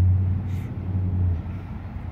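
Low, steady engine hum of a nearby motor vehicle, which dies away about one and a half seconds in.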